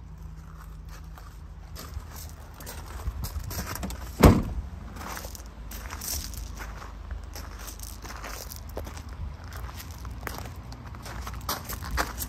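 Footsteps crunching on gravel, with one loud, sharp thump about four seconds in.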